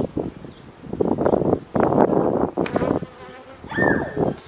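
Carniolan honey bees buzzing loudly near the microphone, swelling and fading as they fly around a brood frame lifted out of the hive, loudest through the middle.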